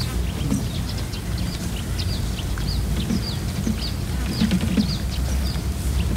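Birds chirping: many short, quick high calls repeating throughout, over a steady low rumble.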